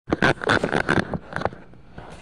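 Loud rubbing and knocking of hands and clothing against the recording phone's microphone as it is picked up and set in place. It comes as a quick run of rough scrapes for about a second and a half, then drops to a low background.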